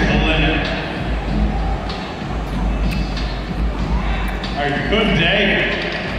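An announcer's amplified voice over an arena public-address system, echoing through the large hall, over a steady low hum.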